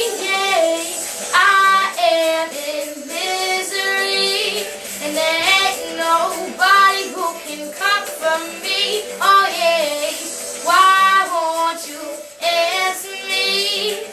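An 11-year-old girl singing a pop song solo, in phrases of held notes that bend and slide in pitch.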